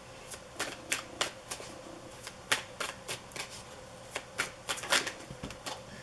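A deck of tarot cards being shuffled in the hands, giving a quick string of crisp card snaps, about three a second.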